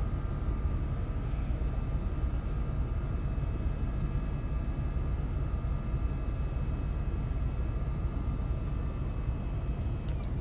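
Steady cabin noise inside a minivan: the engine running and the climate-control fan blowing, with a faint steady whine. No distinct thud is heard.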